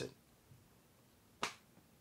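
A single short, sharp click about one and a half seconds in, in a near-silent pause after the voice trails off.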